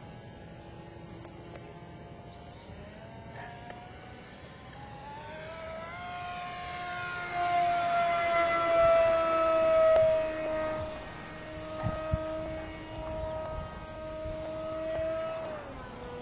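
The five-turn electric motor and propeller of a radio-controlled flying boat whining on a high-speed pass. The whine rises in pitch and grows louder as the plane comes in and is loudest about eight to ten seconds in. It then drops in pitch as the plane goes by, holds steady, and falls away near the end.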